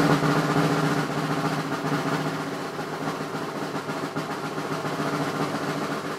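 Acoustic drum kit played in a fast, continuous roll, the strokes blurring into one steady clatter over the drum tones with cymbals ringing above.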